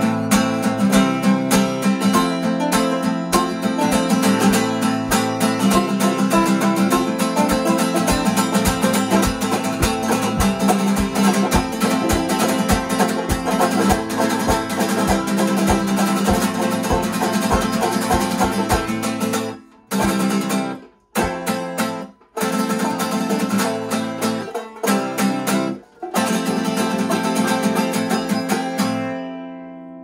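Acoustic guitar and banjo playing an instrumental passage together, busy picked and strummed notes. About twenty seconds in, both cut out together several times in a row for short stop-time breaks, and near the end a final chord rings out and fades as the song ends.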